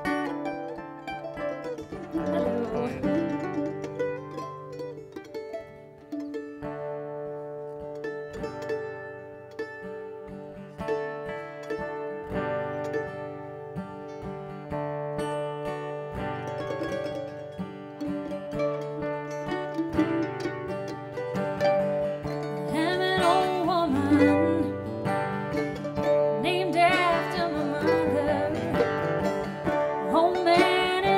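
Live acoustic band music: two acoustic guitars and a mandolin strumming and picking a slow song. A woman's singing voice comes in over them at about two-thirds of the way through, and the music grows louder.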